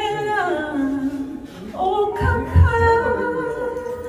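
A woman singing a gospel song solo into a handheld microphone: a held line that glides downward through the first second, then a new phrase begins about two seconds in, with a few low thumps underneath.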